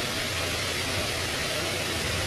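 Steady background noise, a continuous hiss with a low hum underneath, unbroken and without distinct knocks or clicks.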